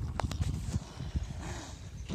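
Wind buffeting a phone microphone as a low, uneven rumble, with a few short knocks and clicks from the phone being handled, most of them in the first second.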